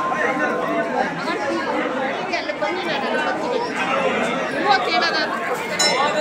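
Crowd chatter: many voices talking over one another, indistinct and steady.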